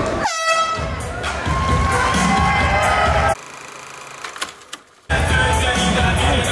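An air horn sounds one short blast near the start, marking the end of the round, over crowd noise and background music. Past the middle the sound drops to a faint low hum for nearly two seconds, then the music and crowd come back.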